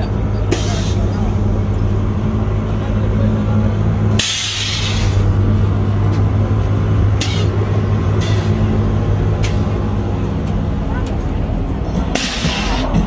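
Lowered Chevrolet pickup with air-bag suspension letting out air in short hisses, a longer one about four seconds in and several brief ones after, over the steady low hum of its idling engine.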